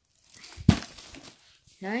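Empty plastic and paper food packaging rustling and crinkling in a rubbish bag, with one sharp knock a little past half a second in.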